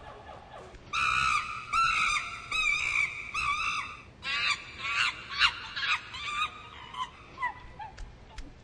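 Chimpanzee screeching: long, high, wavering calls starting about a second in, then a run of short rising shrieks from about four seconds in that thin out near the end.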